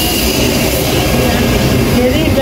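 Steady loud roar of car-wash machinery running in the service bay, the kind of even whoosh that an industrial vacuum or air blower makes.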